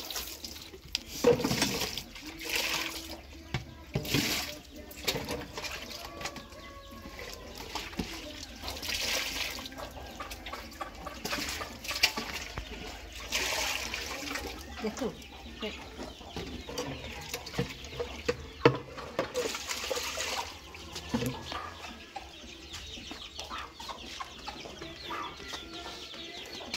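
Hens clucking on and off in a yard, over the crackle of a wood fire burning under a simmering pan, with a few brief hissing surges now and then.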